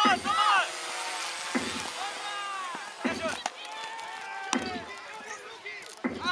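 A drum struck at an even beat, about once every second and a half: the Jugger timing drum counting the 'stones' that pace the game. Players' shouts sound between the beats.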